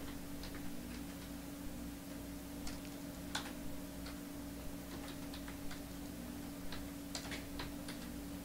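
Faint, irregular clicking of a computer keyboard and mouse, over a steady low hum.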